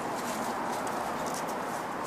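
Footsteps on dry leaf litter, a few faint crunches over a steady background hiss.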